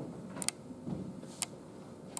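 Computer mouse clicking: a quick double click about half a second in, then a single click about a second later.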